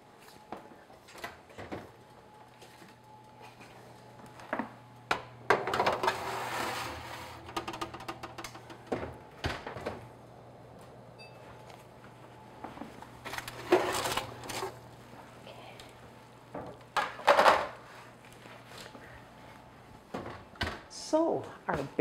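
A metal sheet pan holding a ceramic baking dish is handled and slid into and out of an oven: scattered knocks and scrapes of metal on the oven rack and door. There is a rushing noise about six seconds in and a low steady hum through most of it.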